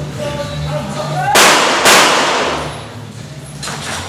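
Two loud pistol shots about half a second apart, about a second and a half in, each with a reverberant tail, and a fainter crack near the end, over steady background music.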